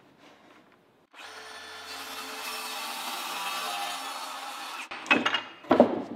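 DeWalt circular saw cutting through half-inch plywood along a straight edge. It starts about a second in, runs steadily for nearly four seconds and stops abruptly, followed by two brief louder noises near the end.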